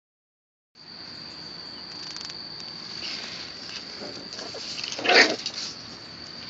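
A puppy barking once, short and sharp, about five seconds in, with a few faint clicks before it, over a steady high-pitched tone.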